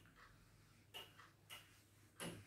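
Faint strokes of a board eraser wiping across a whiteboard, two short swishes about half a second apart.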